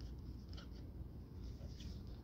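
Faint handling noise: a hand turning a plastic cup over, with a few light rubs and scrapes.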